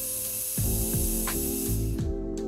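Small electrolytic capacitor wired in reverse polarity at 16 W, hissing steadily as it overheats and vents smoke; the hiss cuts off suddenly near the end. Background music with a bass beat plays underneath.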